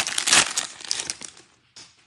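Foil wrapper of a Bowman baseball card pack crinkling and tearing as it is ripped open by hand, loudest in the first half second and dying away by about a second and a half.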